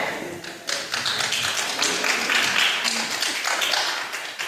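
A small congregation applauding: a dense patter of hand claps that swells about a second in and carries on to the end.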